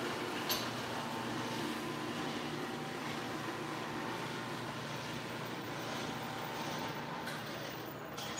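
Steady workshop background noise, an even hum and hiss like ventilation, with a faint click about half a second in.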